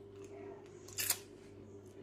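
A pause between words, filled by a steady low hum with one short hiss-like rustle about a second in.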